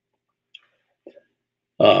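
Quiet at first with a couple of faint clicks, then near the end a man's short, loud throaty vocal sound.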